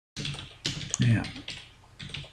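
Computer keyboard typing: a handful of separate key clicks.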